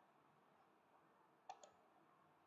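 Two quick computer mouse clicks about a second and a half into otherwise near silence.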